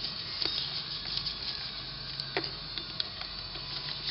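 Screws being tightened down into the top cap of a Harley-Davidson CV carburetor: a few light, scattered clicks of the driver and metal parts.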